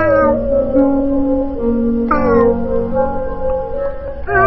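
Background music with sustained notes, over which a cat meows twice, at the start and again about two seconds in, each meow falling in pitch.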